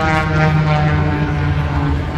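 Propeller aircraft flying over, a loud steady engine drone that slowly falls in pitch.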